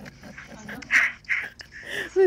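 A dog breathing, with two short breathy huffs about a second in and a faint high whine near the end.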